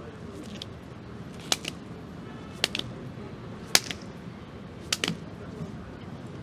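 Hands slapping down on pavement during jumping push-ups: four sharp slaps about a second apart, several in quick pairs.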